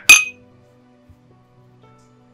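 Two wine glasses clinking together once in a toast, a single bright ring that dies away quickly.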